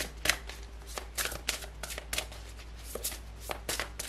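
A deck of large tarot cards shuffled by hand, packets of cards slid and slapped from one hand over the other: a run of short, irregular card strikes about three a second.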